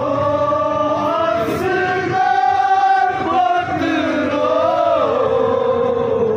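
A Kashmiri nowha, a Shia mourning elegy, chanted in long held notes that glide slowly up and down in pitch.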